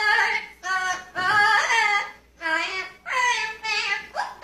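A green parrot vocalising in a high, sing-song voice: five short, warbling, voice-like phrases in a row, each under a second long.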